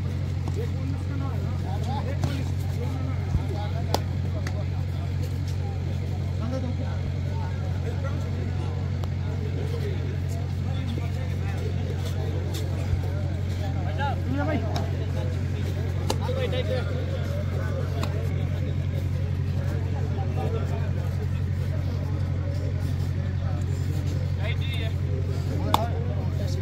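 Scattered voices of kabaddi players and spectators over a steady low hum, with a few short sharp knocks or claps.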